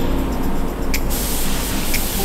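Iwata Supernova gravity-feed spray gun triggered about a second in: a steady hiss of air and metallic silver base coat. Background music with a soft tick once a second plays throughout.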